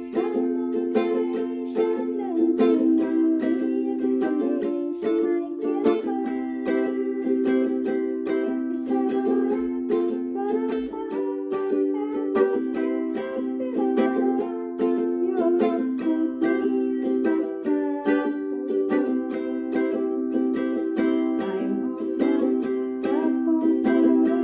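Ukulele strummed in a steady rhythm, playing basic chords.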